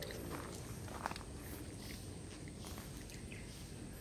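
Footsteps and a low rumble of a hand-held camera moving, with one short knock about a second in.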